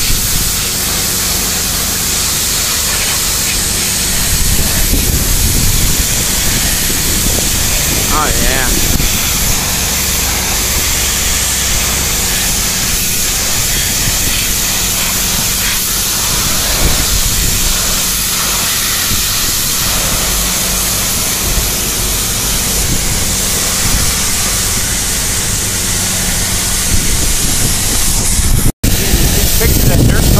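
Water spraying hard from a pressure-washer wand onto a marble statue: a steady hiss with a low hum underneath. The sound cuts out for an instant near the end.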